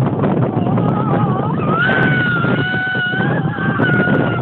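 A young man's voice singing a long, high, wavering note in mock falsetto, rising about two seconds in and then held, over a steady rush of wind on the phone microphone.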